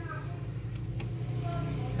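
A few light clicks, about a second apart, from the oscillation-angle knob on a Hitachi fan's base being turned, over a steady low hum.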